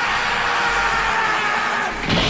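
Rage-style synth melody from a drill-rhythm instrumental, held on sustained notes with no drums.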